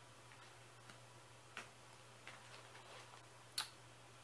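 Near silence with a few faint clicks of small cosmetic packages being handled, three in all, the sharpest near the end.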